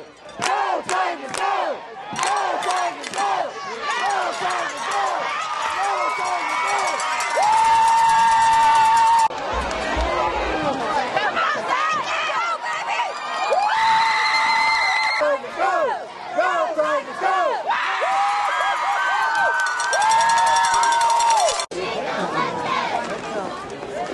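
Football crowd cheering and shouting from the stands, many voices yelling over one another, with a few long held calls.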